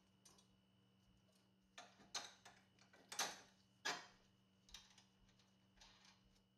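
Near silence with a handful of faint, irregular metallic clicks and taps as a bolt is fitted by hand through the upper control arm mount.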